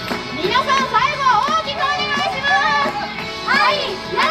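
Young girls' voices calling out in high, swooping shouts over a pop backing track.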